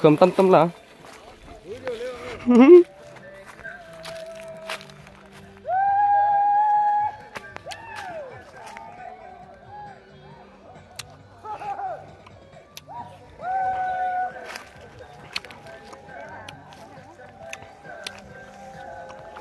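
People's voices: a few words of talk at the start, then long drawn-out calls or sung notes, each held steady for a second or more, twice.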